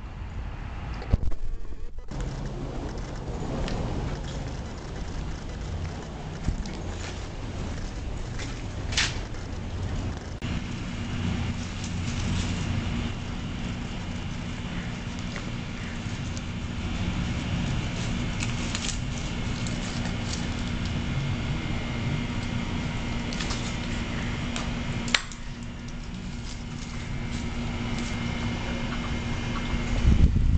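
A steady mechanical hum with a few brief clicks and knocks. It changes abruptly a few times.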